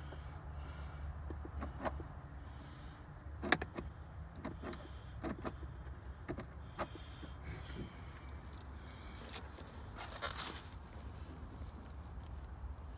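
Scattered faint clicks and knocks from a kids' ride-on electric toy car's foot pedal being pressed by hand, over a low steady hum. No motor runs: the car has shorted out.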